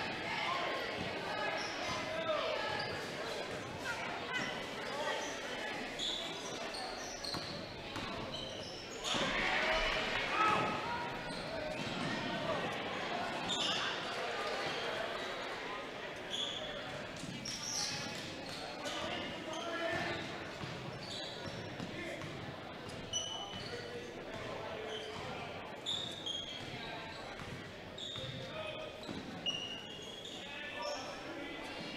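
Basketball dribbled on a hardwood gym floor during live play, with players and spectators calling out in the echoing gym. Short, high squeaks are scattered throughout.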